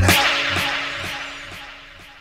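A noise sweep fading out over about two seconds as a hip-hop track ends, the kind of transition effect used between songs in a DJ mix. The beat drops out at the start and only the fading noise remains.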